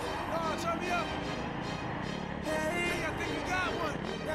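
Indistinct voices mixed with music over a steady low rumble.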